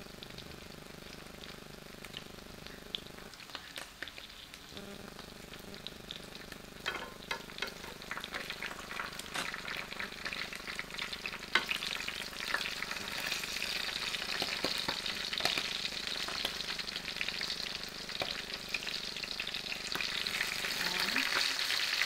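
Small whole fish frying in oil in a metal pan, a steady sizzle that grows louder through the second half. Tongs click and scrape against the pan as the fish are turned.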